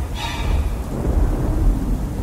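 Thunder rolling deep and continuous under a hiss of rain: a storm sound effect. A brief higher sound cuts in just after the start.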